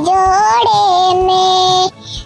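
A high-pitched, cartoon-like singing voice holding long drawn-out notes, breaking off shortly before the end.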